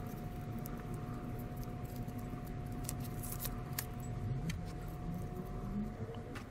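Faint light clicks and clinks of thin punched tin sheet being handled, over a steady low rumble and a thin steady hum in the background.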